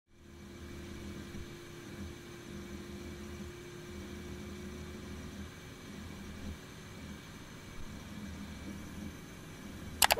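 Faint steady hum and hiss with a thin held tone, under a low rumble that swells and fades every second or so.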